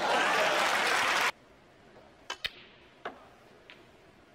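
Audience applause, loud, cut off abruptly about a second in. Then a few sharp clicks of snooker cue and balls: two close together a little after two seconds and one more about a second later.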